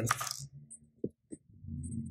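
Two quick light clicks, about a quarter second apart, of small plastic action-figure parts set on a tabletop, followed by a low hum.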